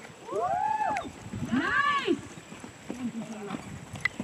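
A high voice calling out twice, each a long call that rises and then falls in pitch, with softer voice sounds after the calls.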